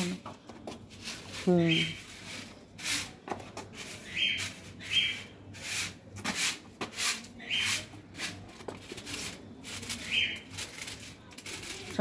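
Short hand broom scraping over wet concrete in quick repeated strokes, about one or two a second, sweeping leaves into a drain hole that they are clogging.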